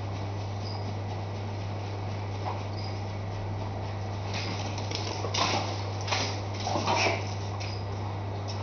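Steady low hum with a constant hiss, typical of a reef aquarium's running pump and equipment. A few short rustling bursts come in the second half.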